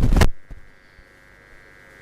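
A loud burst of rumbling noise that cuts off sharply a fraction of a second in, leaving a faint, steady electrical hum from the hall's sound system.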